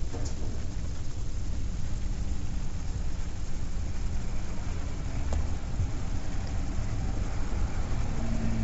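Steady low rumble with an even hiss, with two faint clicks, one right at the start and one about five seconds in.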